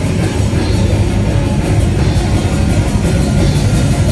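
Heavy metal band playing live, loud and without a break: electric guitar over a drum kit, with fast, evenly repeated drum and cymbal strokes.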